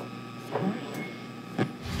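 A few faint clicks and knocks, the sharpest about one and a half seconds in. Loud rock music with heavy guitar starts suddenly just before the end.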